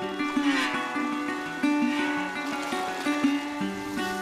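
Music: a plucked string instrument plays a melody of separate, held notes.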